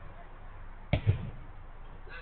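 A football being struck hard about a second in: a sharp smack followed a moment later by a lower thud.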